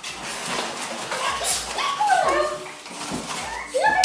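French bulldog puppies whimpering and yipping in several short cries, some falling in pitch.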